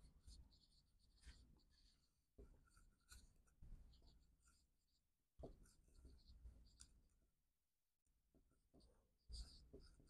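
Very faint strokes of a dry-erase marker writing on a whiteboard, in short irregular bursts.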